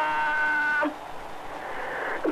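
A sports commentator's long goal cry, held on one steady pitch and cutting off just under a second in. Then stadium crowd noise that slowly grows louder.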